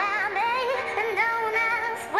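Background song: a high sung vocal line with vibrato over backing music, the notes held and wavering.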